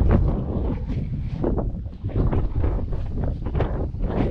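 Wind buffeting the camera's microphone, a loud, uneven low rumble that keeps gusting.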